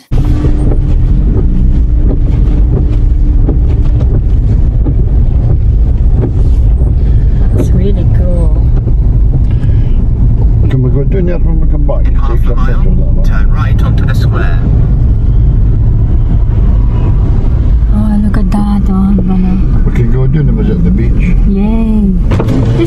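Cabin noise inside a moving car: a loud, steady low rumble of road and engine noise.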